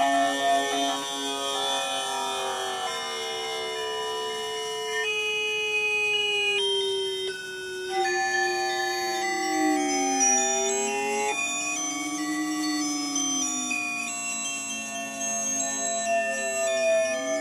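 Electroacoustic music from a sensor-controlled instrument: an Arduino mapping sensor data onto sound in MaxMSP. Layered sustained electronic tones shift in steps every second or two, while some lines glide slowly down and back up in pitch, strongest in the second half.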